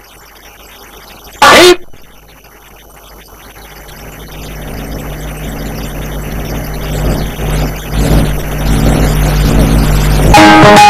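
A brief loud snatch of a man's voice about a second and a half in. Then a low steady drone fades in from about four seconds in and grows louder toward the end, leading into the music of a broadcast announcement.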